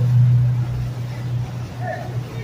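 Low, steady engine drone of a large cabin-cruiser motor yacht passing close by, loudest in the first second and a half and easing a little after.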